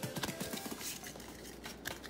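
Quiet handling of a stack of Pokémon trading cards, the cards sliding and being flipped to the back of the pile with a few faint soft clicks.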